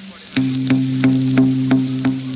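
Dancehall reggae riddim playing without a deejay: a held bass note comes in about half a second in under sharp drum hits about three a second, with a hissy, crackly tape-recording texture over it.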